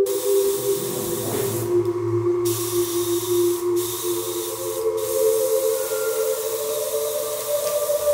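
Airbrush spraying paint onto leather in a steady hiss. It stops briefly three times, the longest break about two seconds in.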